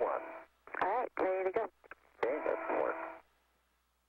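Spacewalk radio chatter: clipped, thin voices over the air-to-ground radio link, a few short phrases that break off about three seconds in, followed by near silence.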